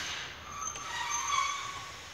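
EU07 electric locomotive rolling slowly while shunting, its steel running gear giving a high-pitched metallic squeal of several tones that rises about half a second in and fades near the end. A short burst of noise comes right at the start.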